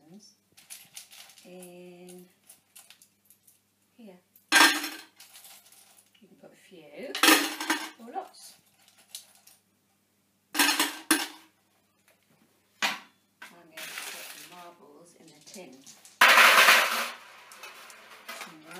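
Metal paper clips dropped into a small pot, clinking in several loud, short bursts a few seconds apart, with quieter rattling between them.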